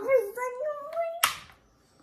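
A child's voice: one drawn-out sound rising slowly in pitch, ending in a short hiss about a second and a quarter in.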